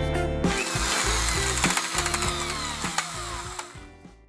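Edited-in transition sound effect: a hissing, clicking sweep with several falling tones, laid over background music and fading out near the end.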